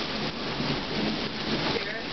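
Steady rain falling on the street and lawn in a summer thunderstorm.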